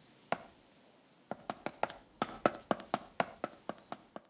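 Cartoon sound effects of light, sharp taps: one tap, then after about a second a quick, slightly irregular run of taps, about four or five a second, for the animated mascot's little feet as it scurries off.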